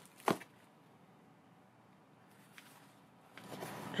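Cardboard and paper being handled while unpacking a shipping box: a single short knock about a third of a second in, then faint rustling near the end.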